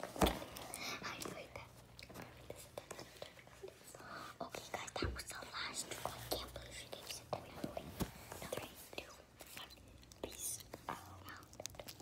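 Young girls whispering close to a phone's microphone, with a heavy thump just after the start and scattered knocks and bumps from the phone being handled.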